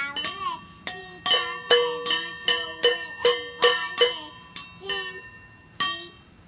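Two upturned stainless steel mixing bowls struck with a thin stick by a toddler like a drum, each hit ringing with a bright metallic tone. About a dozen hits come in an uneven beat of roughly two to three a second.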